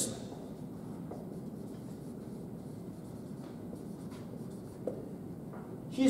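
Dry-erase marker writing on a whiteboard: a few faint scratching strokes over steady room noise.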